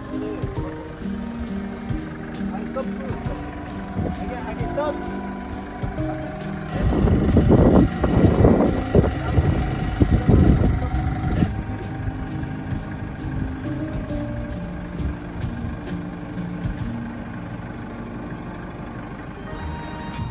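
Background music over a forklift's engine running, which grows much louder for about five seconds in the middle.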